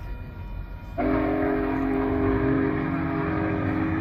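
Union Pacific Big Boy No. 4014's steam whistle sounding one long, steady chord of several notes. It starts suddenly about a second in, over a low rumble.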